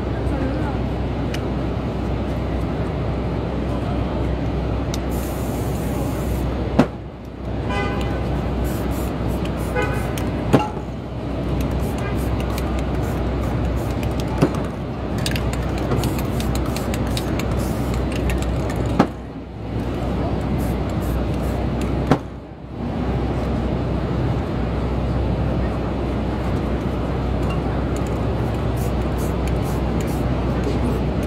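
Busy city street noise of traffic and voices, with a short horn-like tone about eight to ten seconds in.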